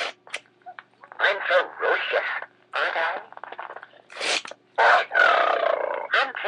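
Mattel Larry the Lion Jabber Jaws talking puppet's pull-string voice record playing the lion's recorded phrases in short separate bursts, with a longer held phrase near the end.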